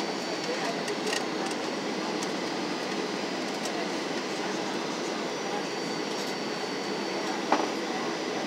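Steady engine and airflow noise inside the cabin of a Boeing 737-700 with CFM56-7B turbofans on final approach, with a faint high whine over it. A single sharp click near the end.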